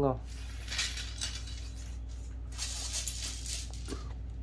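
Faint handling noise of hands moving along a carbon fishing rod blank, a few soft rubs and light clicks, over a steady low electrical hum.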